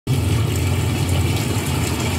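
Pool pump running with a steady low hum, water churning through the skimmer basket.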